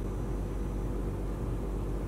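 Steady background hum and hiss, strongest in the low bass, with no distinct events.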